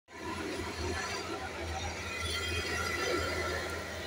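A Caterpillar tracked excavator's diesel engine running with a steady low drone, with high squeals from the machine as it moves on its tracks.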